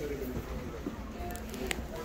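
Indistinct background voices with faint music, and a single light click near the end.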